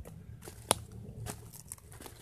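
Footsteps crunching through dry fallen leaves, a few irregular crackly steps with a low rumble underneath. There is one sharp, loud crack about two-thirds of a second in.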